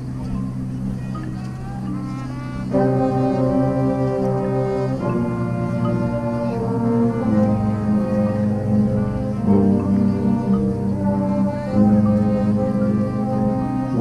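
Marching band brass playing slow held chords. It starts on a low held chord, gets louder about three seconds in, and moves to a new chord every two seconds or so.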